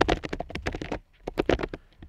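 Fast typing on a computer keyboard: a quick run of key clicks that stops about a second in, then a short burst more.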